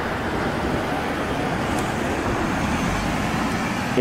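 Toyota Alphard minivan driving past close by: a steady sound of engine and tyres on the road.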